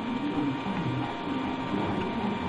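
Steady low hum and hiss of machine noise with a faint thin high tone, and no distinct event.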